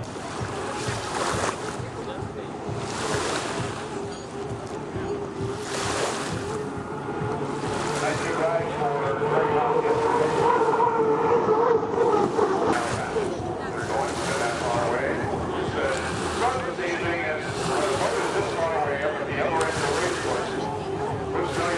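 Turbine-powered Unlimited hydroplane running at speed across the lake, a steady whine that grows louder as the boat passes closest about halfway through, with gusts of wind buffeting the microphone.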